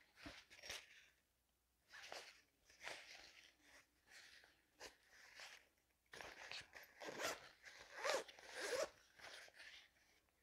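Faint zipper on a thin fabric backpack cooler being worked in several short, irregular pulls, with rustling of the fabric as the bag is handled.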